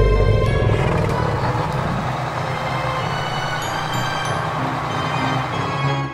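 Instrumental backing music of a children's Halloween song, steady and dense with a low rumble underneath, playing between sung verses.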